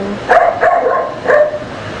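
A dog barking three short times.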